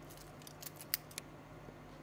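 Stainless-steel folding clasp and bracelet of an Orient watch being unfolded by hand, giving a few light metallic clicks in the first second or so.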